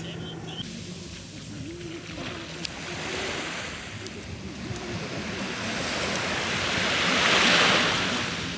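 Small sea waves breaking and washing up a sandy beach, with one wave building to the loudest rush of surf near the end.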